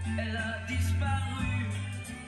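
Horn gramophone playing a shellac record: a passage of a French pop song with guitar, between the sung lines.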